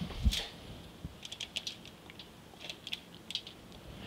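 Light handling noises of tomato slices being set between zucchini slices on a foil-lined sheet pan: a soft thump near the start, then a scatter of small, sharp clicks.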